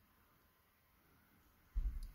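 Near silence, then a single brief low thump near the end.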